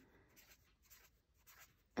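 Faint scratching of a felt-tip marker on a paper notepad, a few short strokes as digits are written.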